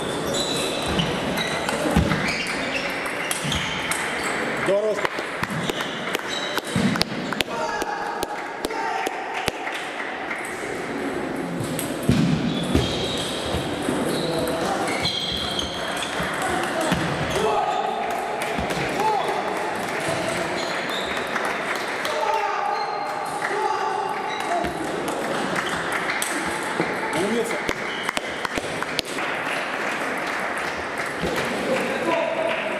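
Table tennis balls clicking off paddles and tables in quick rallies, with indistinct voices and chatter in the background.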